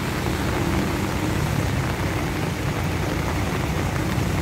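A large coach's diesel engine idling close by in stopped traffic: a steady low rumble with a constant hiss over it.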